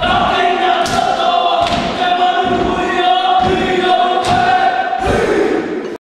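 A group of voices singing together, holding long, steady notes that change every second or so.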